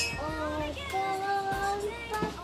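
A young child singing to herself in a wordless, sing-song voice with a few held notes, and a brief sharp click right at the start.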